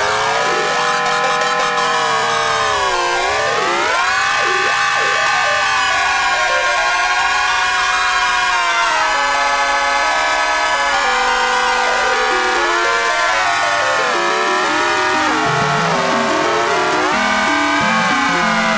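Loud electronic music: a sustained, horn-like drone of several stacked tones that slide down and back up in pitch again and again.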